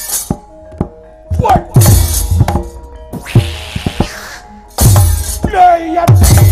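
Wayang kulit battle accompaniment: the dalang's metal kecrek plates crash and clatter in sharp, loud bursts over kendang drum thumps and gamelan tones, with one longer rattle in the middle and shouted cries.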